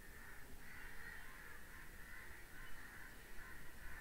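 Faint bird calls in the background, repeated several times.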